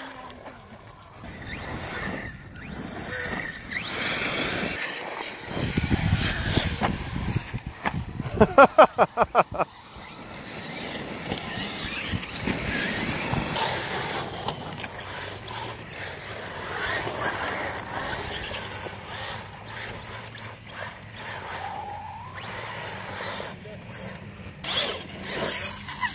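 Battery-electric 1/8-scale RC cars and trucks driving over a dirt track: a motor whine that rises and falls with the throttle over the hiss of tyres in loose dirt. A burst of laughter comes about nine seconds in.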